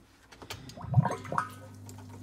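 Small submersible water pump in a barrel of water switching on about a second in with a brief gurgle. It then runs with a steady low hum as it starts circulating the water.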